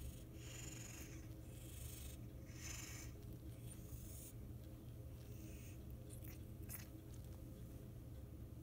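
A cat breathing noisily through a congested nose, with short hissy breaths about every two seconds over a low steady hum. The congestion comes from a cryptococcal infection that has swollen her face and airways.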